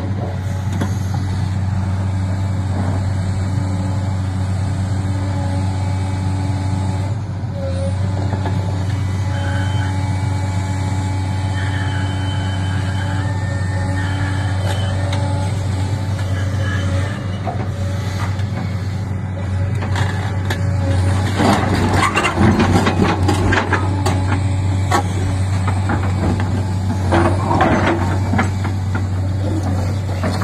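JCB 380 tracked excavator's diesel engine running steadily under load with a low drone while it carries a heavy marble block in its bucket. From about two-thirds of the way through, loud scraping and knocking rise over the engine as the bucket and block work against the ground.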